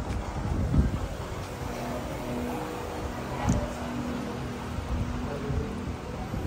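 Wind buffeting a handheld phone's microphone outdoors, a steady low noise, with two short bumps, one about a second in and one just past the middle.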